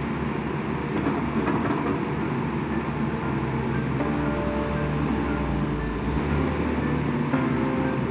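Steady machinery noise from a Massenza MI28 water-well drilling rig running its diesel deck engine while the automatic pipe loader raises a drill pipe into the mast, with background music under it.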